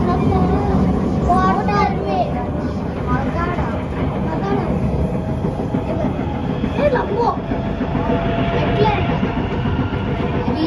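Steady running noise of a Singapore MRT C751B train, heard from inside the carriage: a continuous rumble of wheels on rail and traction motors under way. Passengers' voices come and go over it.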